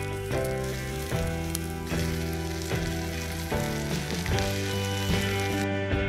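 Cumberland sausages sizzling in a pan on a gas barbecue, under background music with a clear melody of changing notes. The sizzle cuts off suddenly near the end.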